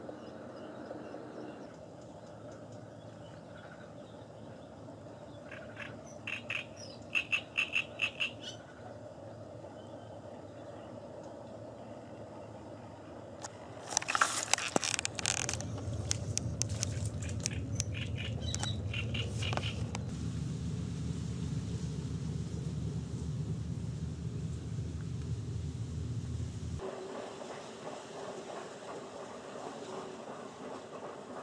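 About half a dozen short, sharp calls in quick succession near the start. About halfway through comes a burst of crackling and rustling as dry reeds are pushed through, followed by a low steady rumble that runs for about ten seconds and then stops.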